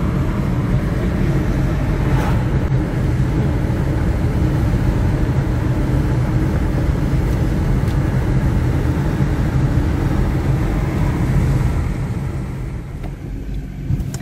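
Steady road and engine noise heard inside a moving vehicle's cabin at highway speed, a low, even rumble. It grows quieter near the end as the vehicle eases off.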